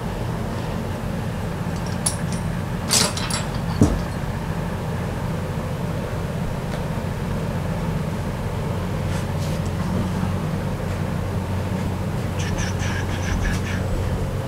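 A steady low mechanical hum, with a few light metal clinks about two to four seconds in as steel bearing parts are handled on a workbench.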